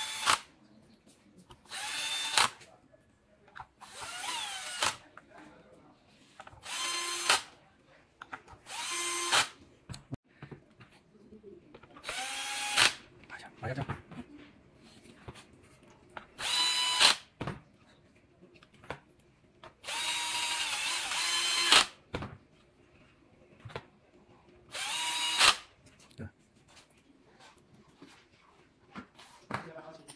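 Cordless electric screwdriver driving screws into an electric unicycle's battery mount. It runs in about nine short bursts, each whine rising as the motor spins up. The longest burst comes about twenty seconds in.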